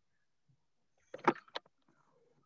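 A short cluster of knocks and clicks a little past the middle, from the computer or its microphone being handled to clear a muffled sound. Otherwise near silence.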